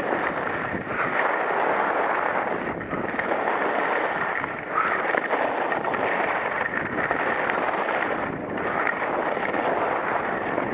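Skis sliding over snow while wind rushes over the action camera's microphone. The sound is a continuous, muffled noise that swells and dips every few seconds as the skier turns.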